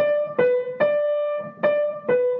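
Piano playing a simple tune one note at a time: four separate notes in the middle register, about half a second apart, stepping between two nearby pitches. Each note is struck by dropping the hand and forearm onto a different finger.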